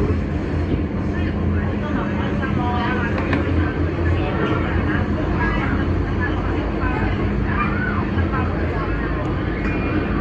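Disneyland Resort Line train running on the track, heard inside the car as a steady low hum of motor and running noise. Passengers' voices chatter over it.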